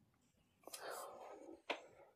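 A person's faint breathy whisper, about a second long, followed by a sharp click.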